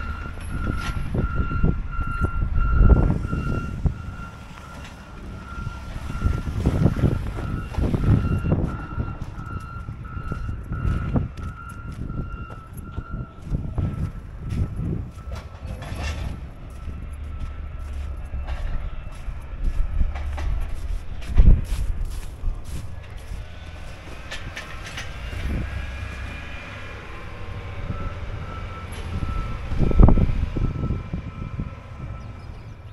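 Backup alarm of a snow-clearing vehicle beeping steadily, fading out about halfway through and faintly back near the end, over wind buffeting the microphone and footsteps crunching in packed snow.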